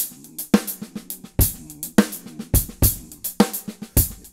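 Tama Starclassic drum kit played in a funk groove: quick diddle stickings on snare and hi-hat, with bass drum strokes dropped in unevenly among the hand strokes.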